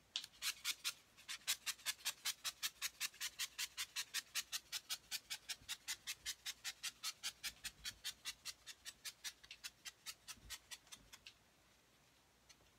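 Glitter being shaken from a shaker container onto soap, a fast, even run of short shakes, about five a second, that thins out and stops near the end.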